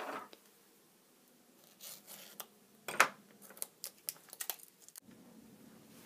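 Hands handling a clear plastic RC servo box: scattered rustles and light plastic clicks, with one sharp snap about three seconds in.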